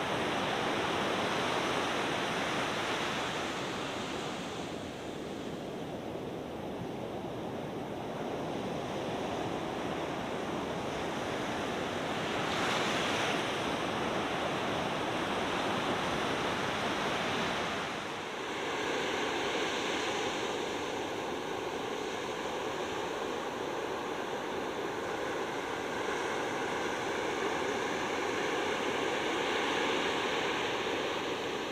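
Steady rushing of ocean surf with some wind, swelling and easing slightly. A little over halfway through the sound briefly dips and changes character, taking on a faint steady hum.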